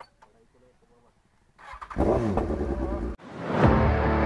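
A sport motorcycle's engine revving hard, starting about one and a half seconds in and cutting off abruptly just past three seconds. Music swells up right after.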